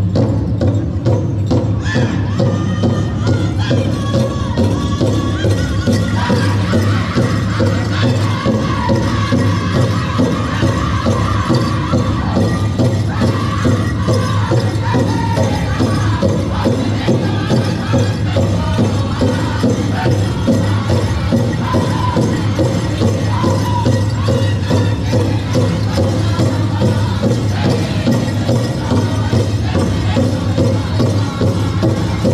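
Powwow drum group singing a straight traditional song: a large drum struck in a steady beat by several drummers under high-pitched unison voices.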